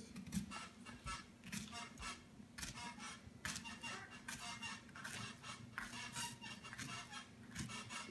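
Kitchen knife cutting through pineapple on a wooden cutting board: a series of faint, irregular slicing strokes, with a steady low hum beneath.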